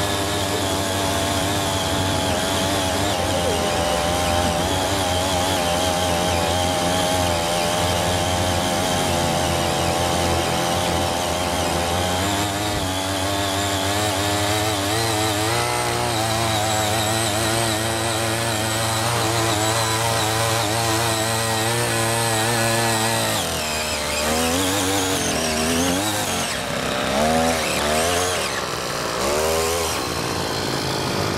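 Small air-cooled two-stroke mini tiller engine running steadily under load as its tines churn soil that is frozen below the surface, the pitch wavering slightly. Near the end the engine speed rises and falls several times.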